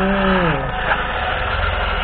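A man's voice drawn out briefly at the start, falling in pitch. Then a steady mechanical running noise, the small electric motor and gearbox of a WPL D12 remote-control pickup driving along.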